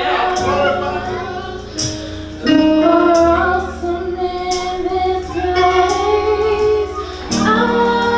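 Women singing a worship song into microphones over backing music, with long held notes above a sustained bass line that changes pitch a few times and light high ticks about once a second.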